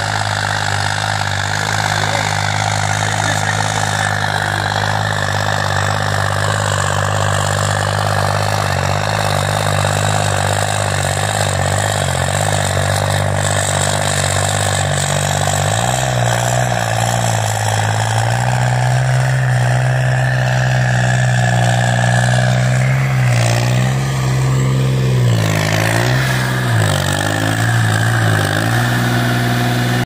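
New Holland 3630 tractor's diesel engine running under load while it pulls a harrow through tilled soil. After a change about halfway through, the engine's pitch rises and falls several times near the end.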